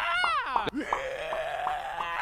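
A person's voice making a wavering, bleat-like vocal effect by shifting the jaw, its pitch swooping down and up. After a brief break about two-thirds of a second in, it becomes a steady held note.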